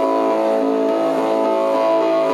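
Keyboard synthesizer holding a steady drone chord of several sustained notes at an even loudness.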